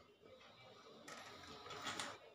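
Faint scratchy rustling that starts about a second in and grows louder toward the end: handling noise from the phone being moved over cloth.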